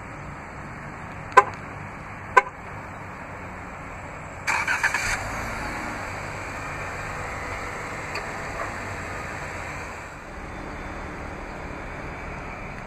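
Two short sharp clicks about a second apart, then the Jeep Cherokee Trailhawk's 3.2-litre Pentastar V6 is remote-started: a brief crank that catches, then a steady idle that eases down a little near the end.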